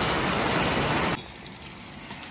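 Heavy rain pouring down, a loud steady hiss that drops off sharply to a much quieter level about a second in.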